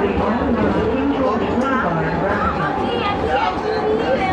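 People talking inside a moving train car, over the low, steady rumble of the train running.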